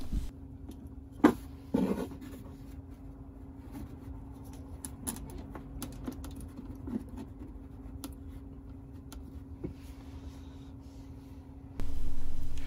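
Handling noise of an aluminium M.2 SSD enclosure being pressed into place in a car's centre-console storage bay with a Velcro command strip. There are two knocks about a second and a half in, then light scattered clicks and rustles, over a low steady hum.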